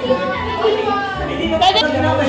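Young people's voices talking over each other, with music playing underneath.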